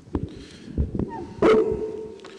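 Microphone handling noise: bumps, knocks and rustles as a gooseneck podium microphone is grabbed and bent through the PA. About one and a half seconds in, a louder knock is followed by a steady low ringing tone, typical of brief PA feedback.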